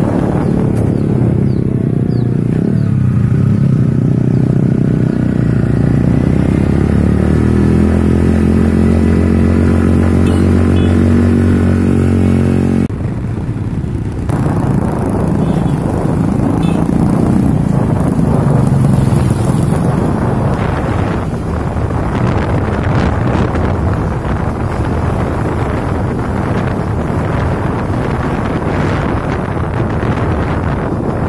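Motorcycle engine running while riding along a road, its pitch slowly rising and falling. About 13 seconds in, the sound changes abruptly to a rougher, noisier engine and road rumble.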